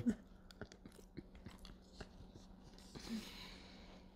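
A person chewing a mouthful of crunchy breakfast cereal: faint, irregular crunches.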